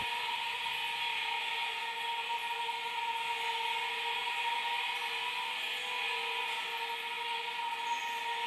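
Sound installation playing through copper still necks used as resonators: two steady held tones an octave apart with a hiss above them.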